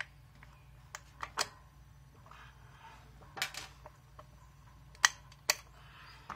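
Sharp clicks and knocks of a hard plastic airless tiller wheel being turned on its steel axle and a metal lynch pin being fitted through the wheel hub and axle. They come at irregular intervals, the loudest about five seconds in.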